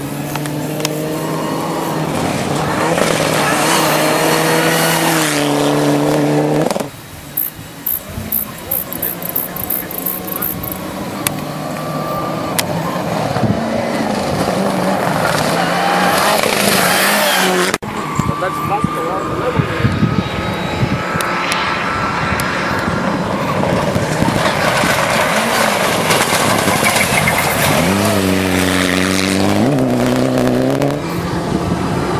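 Turbocharged rally car engine revving hard as the car accelerates along a gravel road, its note rising in pitch. The sound cuts off abruptly about seven seconds in and again near eighteen seconds, with engine sound running through each stretch.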